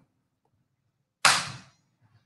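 A single sudden sharp sound a little over a second in, dying away within about half a second.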